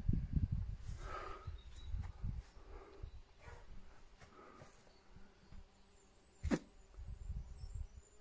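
Quiet outdoor ambience: a low rumble in the first few seconds, a few faint, distant animal calls, and one sharp click about six and a half seconds in.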